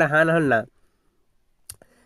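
A man's voice stops early on. After a short near-silence there is a single sharp computer-mouse click near the end, with a faint second tick just after it.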